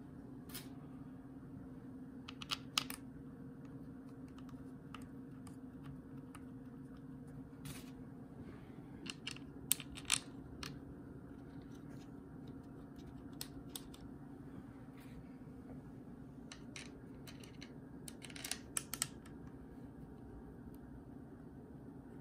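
Scattered small metallic clicks and taps of screws and a screwdriver as the top section of a Getrag DCT470 mechatronic unit is screwed back onto its valve body. The clicks come in small clusters, the loudest about ten seconds in, over a steady low hum.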